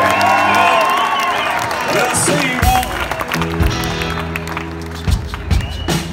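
Live band music. Wavering, sliding notes run over some crowd noise, then about two and a half seconds in a drum hit brings in steady held guitar chords with a few drum beats.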